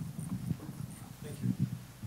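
Low-level room noise with a few soft, short low thumps and faint murmuring.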